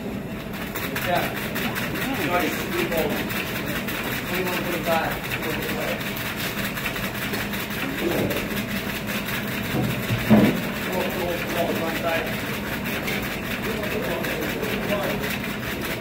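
Hand-cranked antique cocktail-shaking machine running: its flywheel is turned steadily by hand, shaking several metal shaker cups with a fast, even mechanical chatter.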